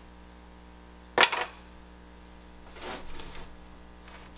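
A sharp slap or knock about a second in, then a softer scraping rustle near three seconds: clay and tools being handled on a wooden hand-building board.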